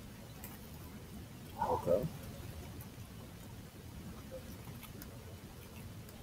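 A short, wordless voiced murmur about two seconds in, over faint low room noise with a few faint clicks.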